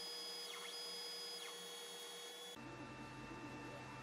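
Faint sound of an Atomstack Kraft laser engraver at work: thin whining tones from its motors over a steady hum, with a few short pitch glides in the first second and a half. About two and a half seconds in, the sound changes abruptly to a lower hum.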